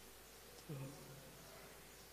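Near silence with a faint steady hum, broken about two-thirds of a second in by a brief low voiced sound from the lecturer.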